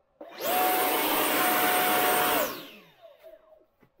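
X-Fly 64 mm electric ducted fan in a Freewing F-22 Raptor model jet, run up suddenly to full throttle: a loud rushing whine with a steady high tone, held for about two seconds, then spooling down with the pitch falling. On a fully charged 4S LiHV pack, its thrust exceeds the jet's weight and lifts it straight up from a hover.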